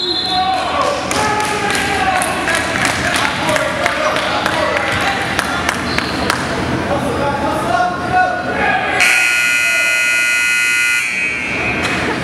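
Basketballs bouncing on a hardwood gym floor with voices in the hall. About nine seconds in, a gym scoreboard buzzer sounds one steady tone for about two seconds, marking a stop in play.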